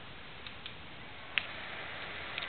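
A laptop power button pressed: one short, sharp click about a second and a half in, with a couple of fainter clicks before it, over a steady low hiss as the machine powers on.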